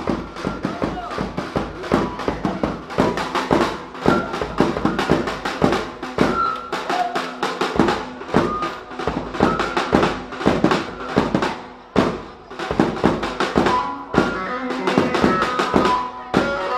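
Fast dance tune (hızlı hava) played live on an amplified electronic keyboard over a dense, rapid drum beat.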